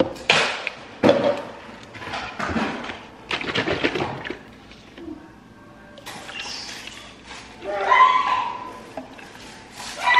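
Clunks and knocks of kitchen items being set down and handled on a granite countertop, then oat milk poured from a carton into a plastic blender cup with a steady hiss from about six seconds in.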